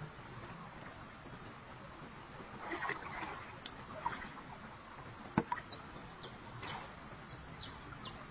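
Shallow stream water being stirred by people wading and groping with their hands: a few short splashes and sharp knocks over a steady faint outdoor hiss, with the sharpest knock about five seconds in.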